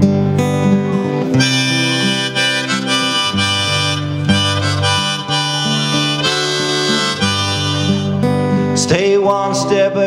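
Harmonica solo played in a neck rack over a strummed acoustic guitar, an instrumental break with no singing.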